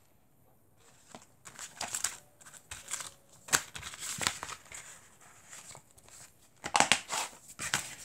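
A paper insert booklet rustling and a plastic DVD case being handled as the booklet is folded and pushed back into it, in short crinkles and clicks, with a louder cluster of clicks and knocks near the end.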